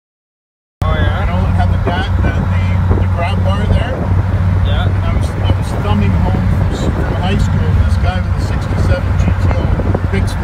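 Pontiac GTO's V8 engine running steadily as the car drives along, heard from inside the cabin. It cuts in abruptly just under a second in, with voices talking over it.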